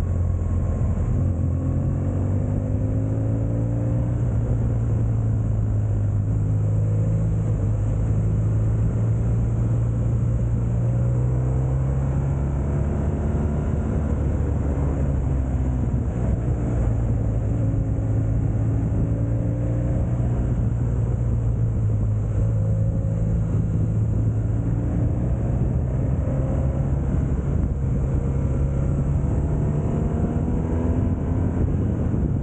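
BMW R 1200 GS Rallye's flat-twin boxer engine running under way, its pitch rising and falling several times with the throttle.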